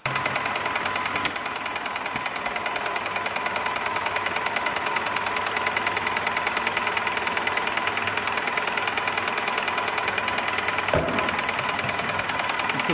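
Airless paint sprayer pump running, knocking with a fast, even rhythm as it pumps green paint out of the system before flushing with thinners.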